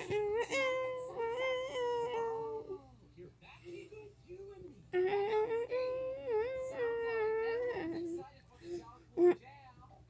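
A young child's voice holding two long, wavering sung notes, each about three seconds, with a pause between them, then a short loud vocal burst near the end.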